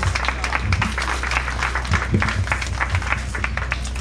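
A crowd clapping, a dense patter of many hands, with music playing in the background.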